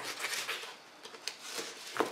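Sharp knife slicing through a sheet of foam underlay on a wooden table: a faint scratchy rasp with small clicks, broken by a brief pause just before a second in.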